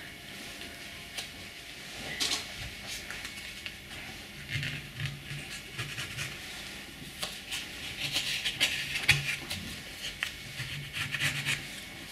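Fingertips and a plastic rib rubbing and scraping leftover dried porcelain slip off the face of a plaster casting mould, a faint, irregular scraping with small clicks.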